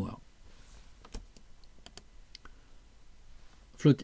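About six light clicks from computer controls, between one and two and a half seconds in, stepping a slide presentation forward.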